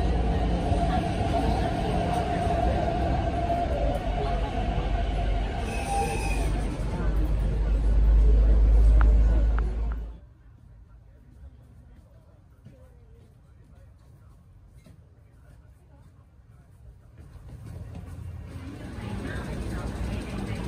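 Hyundai Rotem R-train electric commuter train at a platform: a deep rumble with a held, squeal-like tone, growing louder until it drops off abruptly about halfway through. A quiet carriage hum follows and grows louder again near the end.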